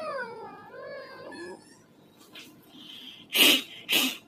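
A drawn-out, wavering, high-pitched cry lasting about two seconds, followed near the end by two short, loud bursts.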